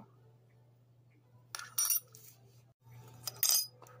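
Two brief clinks of kitchenware being handled, under two seconds apart, over a steady low hum.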